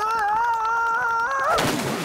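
A child's long, wavering yell, ended about one and a half seconds in by a splash of water.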